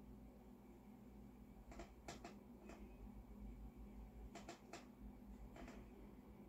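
Near silence over a steady low room hum, broken by a few faint clicks and taps in small clusters, about two seconds in and again from about four and a half seconds: hands working on parts inside the action of an upright piano.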